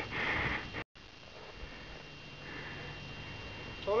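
Footsteps crunching in deep snow, about two a second, which stop abruptly just under a second in. After that there is only a quiet outdoor background hiss.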